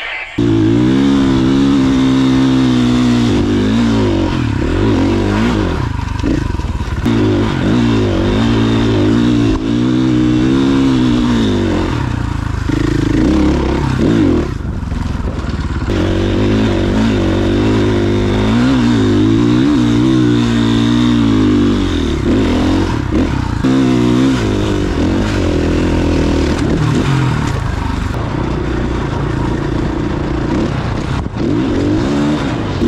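Dirt bike engine heard from the bike being ridden, revving up and down over and over as it is ridden off-road, with a few brief throttle lifts between surges.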